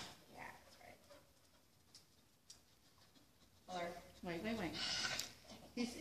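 Mostly a quiet room with a few faint short sounds, then, about four seconds in, a person's voice in a drawn-out, wavering tone for about a second and a half.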